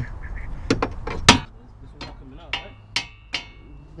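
A hammer strikes steel parts in a Nissan 240SX's front suspension about six times, roughly every half second, the later blows ringing metallically. The parts are stuck and are not coming out.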